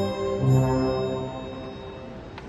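Small instrumental ensemble with violins playing the introduction of a Mass setting: held notes over a low sustained note, dying away in the second half before the choir comes in.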